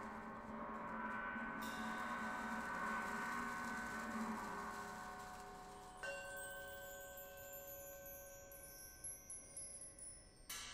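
A gong's sustained ring, slowly fading through the first half. About six seconds in, bar chimes (a mark tree) are set ringing and a hand sweeps slowly across them, a cascade of high ringing tones stepping down in pitch, with a few light strikes near the end.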